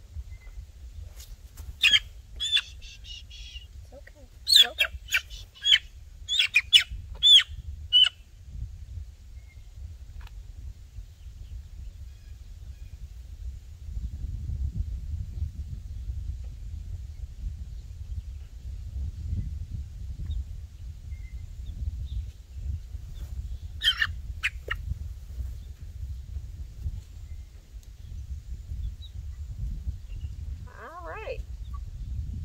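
Cornish cross broiler chick giving loud, shrill distress calls while it is held and handled: a quick run of short calls in the first eight seconds, then two more about 24 seconds in.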